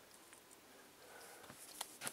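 Near silence, with faint handling noise and a single light click near the end.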